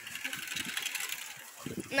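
Quiet outdoor background: a steady soft hiss with no distinct event, and a voice starting right at the end.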